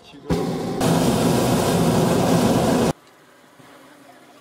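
Hot air balloon's propane burner firing overhead: a loud blast of about two and a half seconds that starts suddenly, grows louder about half a second in, and cuts off abruptly.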